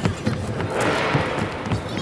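Indoor basketball court background: a general hubbub of voices with scattered low thuds on the hardwood floor.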